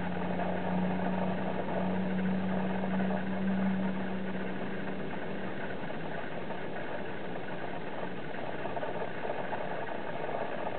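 A steady mechanical hum, like a motor running, with a low steady tone that fades out about halfway through.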